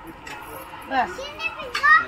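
Children's voices calling out, with two loud high-pitched shouts, one about a second in and a louder one near the end.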